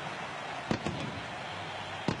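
Stadium crowd cheering steadily, with a sharp bang about two-thirds of a second in and a smaller one right after: the stadium's pirate-ship cannons firing to mark a Buccaneers touchdown.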